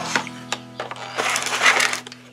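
A few clicks, then a longer rustling scrape, as a 10.1-inch LED monitor and its cable are handled and lifted. All of it sits over a steady low hum.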